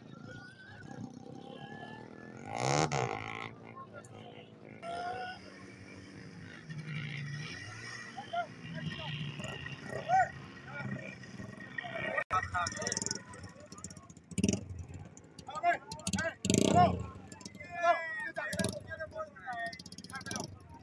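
People talking, over the engine and propeller of a microlight trike (powered hang glider) running on the ground, which swells loudest about three seconds in.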